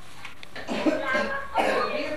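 A steady faint hiss, then from about half a second in indistinct voices with a cough among them.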